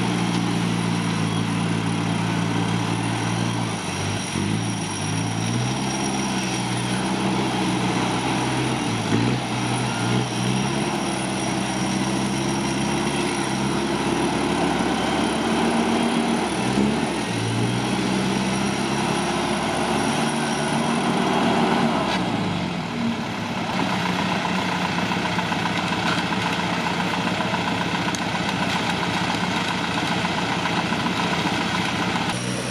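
Off-road 4x4's engine running under load as it winches up a muddy slope, its pitch dipping and recovering several times. It settles to a steady idle a little over 20 seconds in.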